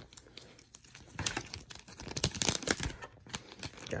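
Plastic packaging crinkling and crackling as it is pulled off a portable charger, in a run of irregular crackles from about a second in until near the end.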